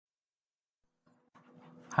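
Silence for about the first second, then faint hiss with a low steady hum as the recording's background noise comes up, just before a man's voice begins at the very end.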